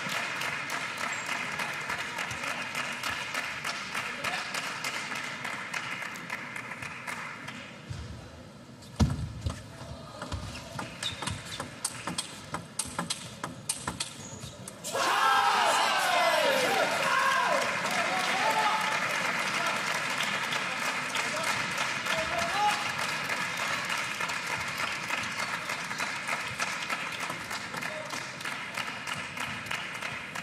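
Table tennis ball clicking back and forth off rackets and the table during a rally, over a quieter crowd. About halfway through the arena crowd suddenly erupts in cheering and shouts, which then settle into a steady crowd murmur.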